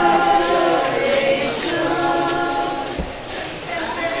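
A group of people singing together in slow, held notes.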